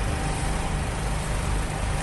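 Steady outdoor background noise of a crowded city square: a low rumble under a constant hiss.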